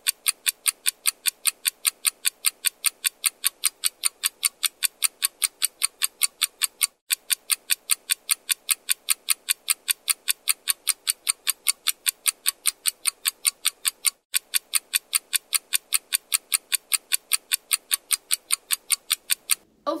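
Clock-ticking sound effect, a quick and even run of sharp ticks, timing a short wait, with two brief breaks about a third and two thirds of the way through.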